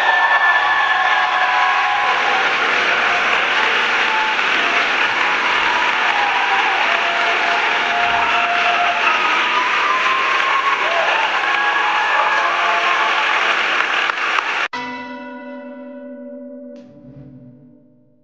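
Audience applauding steadily, with faint music beneath, until it cuts off abruptly about fifteen seconds in. A single bell-like chime tone follows and dies away over about three seconds.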